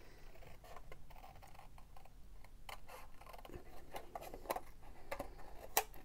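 Small paper snips fussy-cutting around a stamped image in white cardstock: a run of faint, short, irregular snips, coming closer together toward the end.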